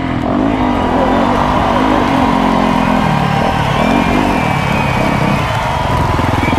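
Dirt bike engines running and revving, their pitch rising and falling as the throttle changes.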